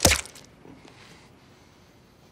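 A knife stabbed into a leg: one loud, sharp thud at the start with a short crackly tail, then faint room sound.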